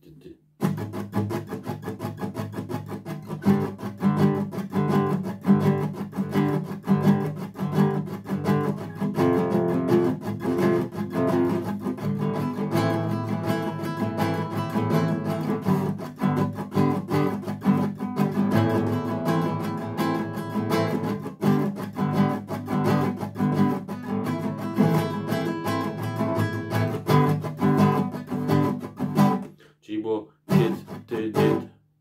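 Classical acoustic guitar strummed in a steady rhythm, repeated chord strokes played as a right-hand strumming-pattern demonstration. It starts about half a second in and stops shortly before the end.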